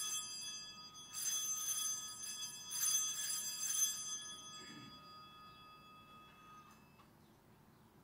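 Altar bells rung at the elevation of the chalice during the consecration: three shakes of bright, many-toned ringing over the first four seconds, then fading away.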